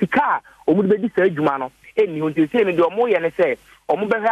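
A man speaking over a telephone line; his voice sounds thin and narrow.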